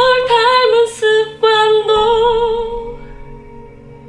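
A woman singing a slow, plaintive Korean ballad phrase over soft sustained accompaniment. She sings several short notes, then holds a last note with vibrato that fades out about three seconds in.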